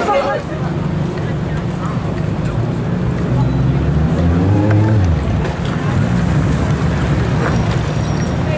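A large engine running close by with a low, steady rumble; its pitch rises and falls again about four seconds in.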